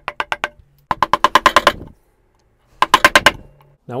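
Wood chisel chopping and paring the walls of a drilled-out through-mortise in a pine board. It makes three runs of quick, sharp taps, about ten a second, the middle run the longest.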